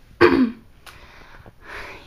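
A girl clearing her throat once, a short rough burst with a falling pitch, followed by a faint click and breathing.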